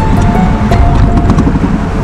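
Motorcycle engine running and pulling away, under a background music score with held tones.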